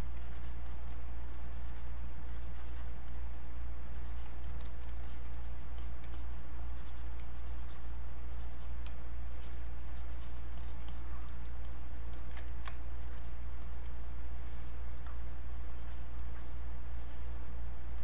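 Stylus scratching and lightly tapping on a graphics tablet, with scattered faint strokes, over a steady low hum.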